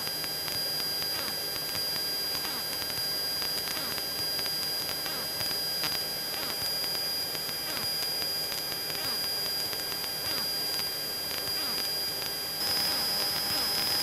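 Steady engine and propeller drone of a Cessna 172 in cruise, heard through the headset intercom, with a thin high whine over it that grows slightly louder near the end.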